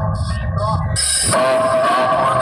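A tall stack of DJ speaker boxes playing a sound-test track at high volume: heavy deep bass under a short repeating vocal sample. About a second in it switches to a steady, held high tone with little bass.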